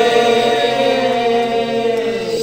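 Voices chanting one long held note in a devotional call, fading out near the end.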